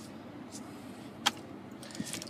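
A 5.7 Hemi V8 idling, heard from inside the truck's cab as a steady low hum, with one sharp click a little past halfway.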